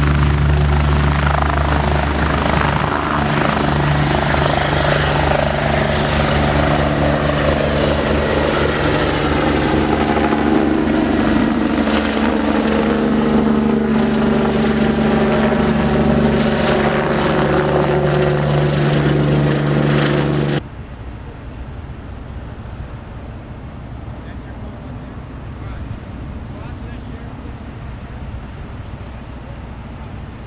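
Air-ambulance helicopter lifting off and flying away, its engines and rotor running loud and steady. The sound cuts off abruptly about two-thirds of the way through, leaving a much quieter outdoor background.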